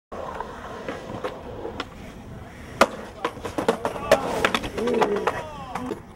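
Skateboard on concrete: a run of sharp clacks and impacts, the loudest a bang about three seconds in, then a dense cluster of clacks and thuds as a skater slams and the board skids away. A person's voice cries out near the end.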